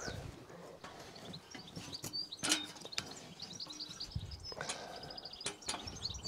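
Birds chirping and singing, with a few light knocks and clunks from a metal tripod ladder as a man climbs it; the loudest knock comes about two and a half seconds in.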